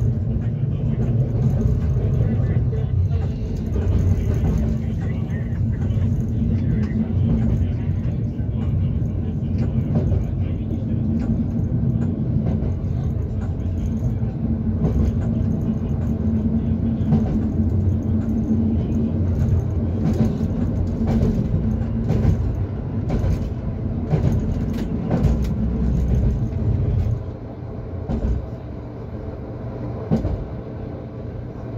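Class 425.95 electric multiple unit running along the track, heard from inside the driver's cab: a steady low rumble with a constant hum, and scattered sharp clicks and knocks from the wheels and rails in the second half. The level drops noticeably about 27 seconds in.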